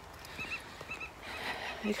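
Distant meadow birds calling: short high notes repeated in small groups.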